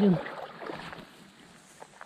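Faint flow of a small, shallow river after the end of a spoken word, with a couple of light clicks near the end.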